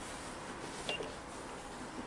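Quiet room noise with one brief, faint blip about a second in.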